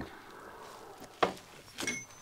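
Two brief knocks over quiet room tone: a sharp one just past a second in and a softer one near the end.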